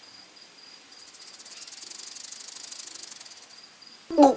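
A rapid, high-pitched rattling buzz that swells in about a second in and fades out shortly before the end: a snake-rattle sound effect for a cartoon snake coiling around its prey. A faint steady high whine runs underneath.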